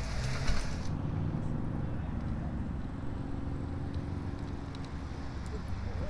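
A minivan's engine running at low speed as it passes close by, a steady low hum, with a hiss of tyre and road noise that falls away about a second in.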